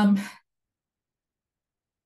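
A woman's spoken 'um' trailing off in the first half second, then near silence.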